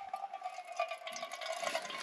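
Water squeezed through a Katadyn BeFree filter bottle pouring in a thin stream into a metal pot. It is a steady trickle with a ringing filling tone.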